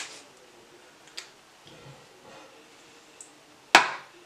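A few light clicks from a plastic lip gloss tube and applicator wand being handled, with one sharp, louder click near the end.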